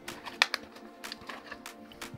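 Plastic blister of a Hot Wheels card crackling and clicking as it is torn away from the cardboard backing, with a sharper snap about half a second in, over soft background music.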